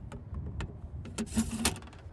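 Handling noises on a bass boat's deck as a small, just-caught bass is picked up: several sharp knocks and clicks, most of them bunched about a second and a half in, over a steady low rumble.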